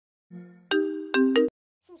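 Electronic phone ringtone chime: a low held tone, then three bright pitched notes in quick succession, cutting off suddenly.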